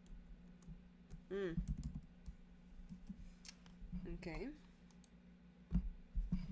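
Scattered clicks of a computer mouse and keyboard over a steady low hum, with two brief voice sounds and a louder knock near the end.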